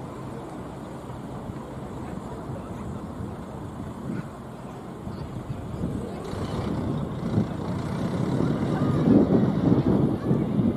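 Low rumble of wind buffeting an outdoor microphone, growing louder over the last few seconds.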